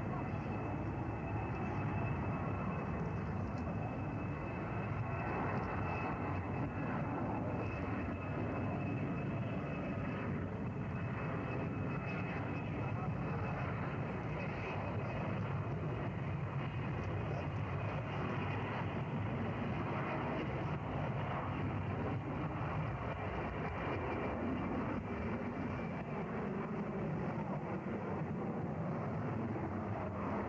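Beriev A-40 Albatros amphibian's jet engines running at takeoff power, a steady rushing noise that holds for the whole takeoff run and climb-out, with a thin high whine that fades over the first ten seconds or so.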